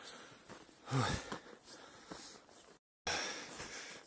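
A hiker breathing hard after a steep, slippery uphill climb, with a short voiced exhale about a second in. The sound cuts out completely for a moment near the end, then comes back.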